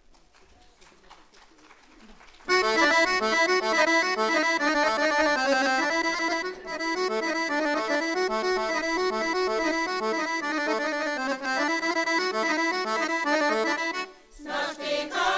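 Accordion playing a lively Bulgarian folk melody as a solo instrumental interlude, coming in suddenly about two and a half seconds in after a brief lull.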